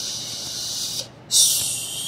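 A deck of oracle cards shuffled by hand: two papery rushes of cards sliding together, the second, starting about a second and a half in, the louder.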